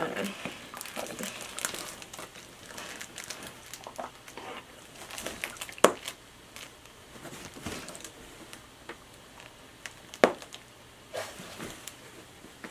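Irregular rustling and crinkling of a plush dog toy and its tags being handled as the tags are taken off, with sharp clicks about six and ten seconds in.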